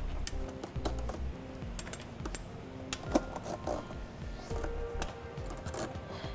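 Irregular light clicks and clinks of metal hooks and cable as a tensioner is hooked onto a cable snow chain fitted to a car tyre. Faint background music plays under it.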